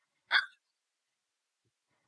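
A person's single short, hiccup-like vocal sound about a third of a second in, then near silence.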